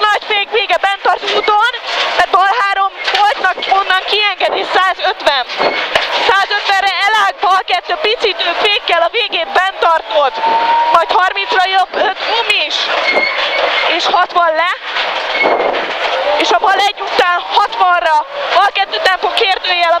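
A man speaking rapidly and almost without pause, reading rally pace notes in Hungarian over the crew's helmet intercom, with the rally car's engine and road noise underneath.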